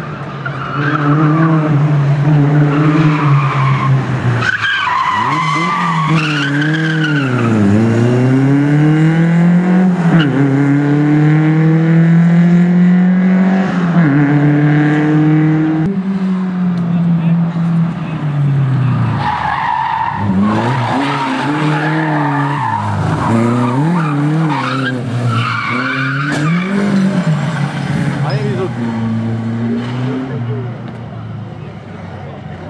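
Škoda 130 rally car's four-cylinder engine revving hard on a special stage. Its pitch climbs and drops again and again through gear changes and lifts, and the tyres squeal.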